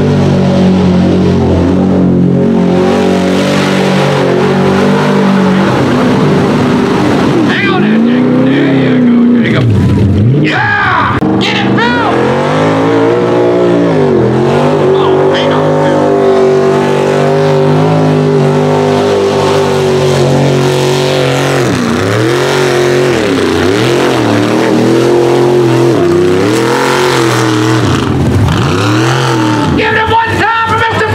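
Mud bog trucks' engines revving hard as they plow through a mud pit. The pitch drops and climbs back several times as the throttle comes off and goes back on.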